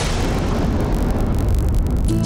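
Dramatic TV-serial sound effect: a steady, loud low rumble like the tail of a boom, with no melody.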